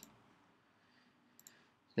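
Two quick computer mouse clicks, close together like a double-click, about a second and a half in, selecting an item on screen; otherwise near silence.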